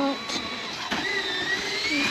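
Mostly speech: a man's short spoken word, then quieter voice-like sounds in the background.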